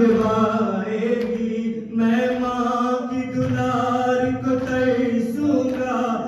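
Male voices chanting a noha, an Urdu mourning lament, in long held notes with short breaks between phrases.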